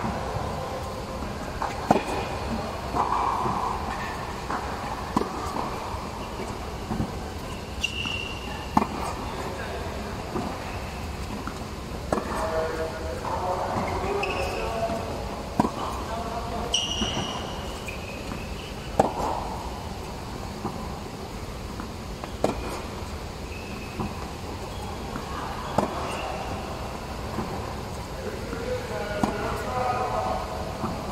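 Tennis balls struck by rackets and bouncing on a hard court, a sharp pop every few seconds, with a few short high squeaks and voices in the background.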